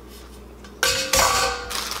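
Metal steamer basket for an Instant Pot being set down, clattering with a sudden knock about a second in and a short metallic ring after it.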